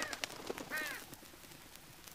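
Two short, hoarse bird calls, one at the very start and one just under a second later, each rising and falling in pitch, then only faint hiss.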